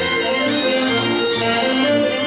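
Live Breton folk dance music from an accordion and saxophone, a steady run of melody notes over a held accompaniment.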